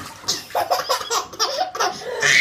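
Baby laughing in a run of short bursts, starting about half a second in, in reaction to water just poured over his head.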